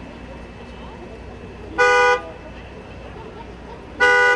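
A vehicle horn sounding two short honks about two seconds apart, each a steady multi-tone blast of under half a second, the second starting right at the end.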